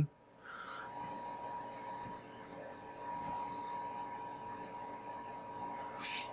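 Faint steady hum and hiss with a thin steady whine running under it: room tone from running equipment.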